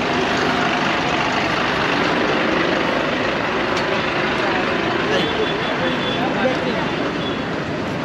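Steady engine and road noise from a bus and passing traffic close by, with people's voices in the background.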